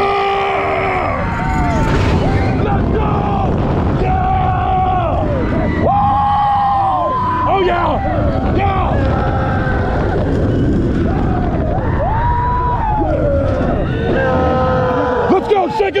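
Riders screaming and yelling on the Griffon dive coaster as it runs through its drop and loop. The wind rushing over the microphone and the train's rumble make a heavy, steady roar under the voices.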